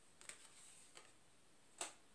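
Faint clicks and a light rustle of oracle cards being handled, with one sharper click near the end.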